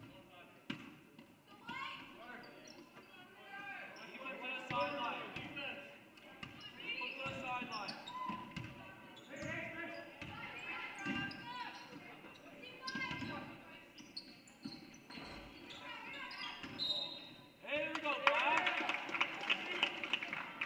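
A basketball being dribbled on a hardwood gym floor, its bounces thudding repeatedly under players' and spectators' voices calling out, which grow louder near the end.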